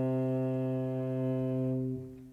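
Cello and piano holding one long, steady low chord, which starts to die away near the end.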